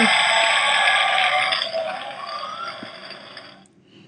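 Crowd applause and cheering that fades away and stops about three and a half seconds in.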